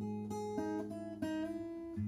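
Acoustic guitar with a capo, a few notes picked slowly and left to ring, a new one sounding roughly every half second.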